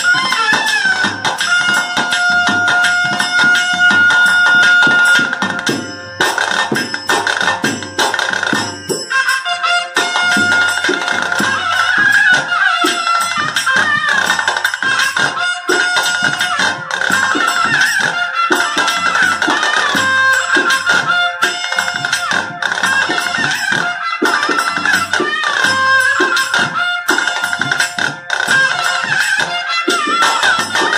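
Traditional ritual music: a reedy wind instrument holds a long, wavering melody over steady drumming and jingling percussion.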